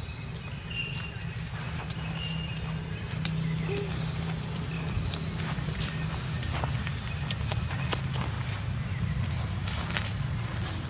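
Footsteps crunching and crackling through dry leaf litter, with sharper crackles clustering a few seconds before the end, over a steady high insect tone.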